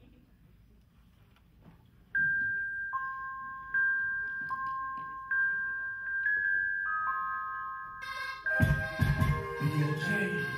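Hip hop backing track starting over the club's sound system: a couple of seconds of near silence, then a melody of sustained bell-like notes on two alternating pitches, with the full beat of heavy bass and drums coming in about eight and a half seconds in.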